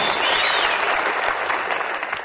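Live studio audience applauding, a dense even clatter of clapping that thins slightly near the end.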